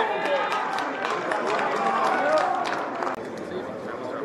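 Several voices shouting over one another at a rugby match, with scattered short knocks. The sound drops suddenly about three seconds in, to quieter calls.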